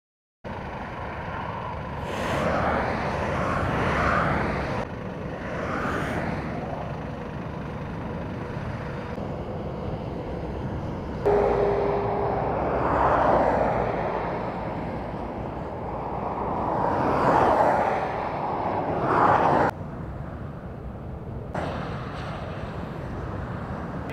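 Motorway traffic passing close by: vehicles sweep past one after another in slow rising and falling whooshes over a steady road rumble. The sound changes abruptly several times.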